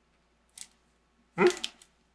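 A person's short questioning "hmm?" about one and a half seconds in, after a faint brief click about half a second in.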